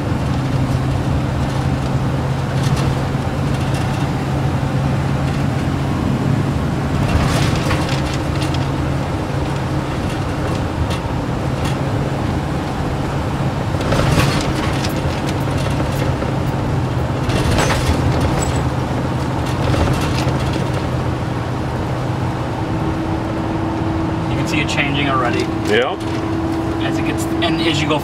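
Steady in-cabin road noise from a car driving at road speed: engine and tyre drone with a constant low hum, and a few brief louder swells.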